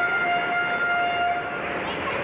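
A steady, flat, horn- or whistle-like tone with overtones, held for about a second and a half and then stopping, over background noise.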